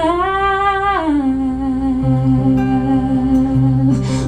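A woman's singing voice holds a long wordless note over acoustic guitar, with vibrato. About a second in, the note steps down to a lower pitch and holds there, while low guitar notes sound underneath.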